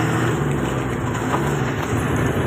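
Engine and road noise heard inside a moving vehicle's cab: a steady low engine hum under a constant rush of tyre and wind noise.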